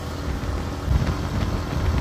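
Yamaha XTZ motorcycle running steadily while being ridden along the road, a steady low rumble of engine and wind noise on the onboard camera microphone.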